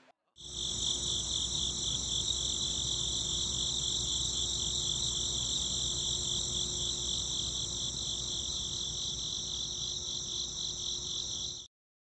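Crickets chirping in a steady, high-pitched, pulsing chorus with a faint low hum beneath; it starts abruptly about half a second in and cuts off suddenly near the end.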